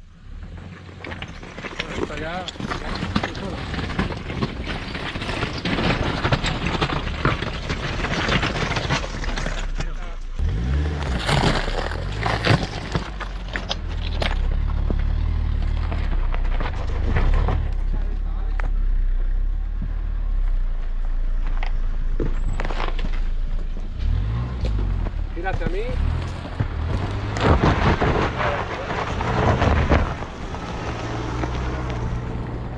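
An off-road 4x4's engine running at low revs, its low steady hum setting in about ten seconds in, with wind on the microphone and indistinct voices.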